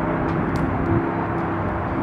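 Steady outdoor background rumble with a faint low hum and a few light ticks.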